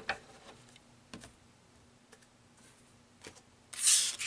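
A few soft clicks from oracle cards being handled, then a brief swish of a card sliding near the end.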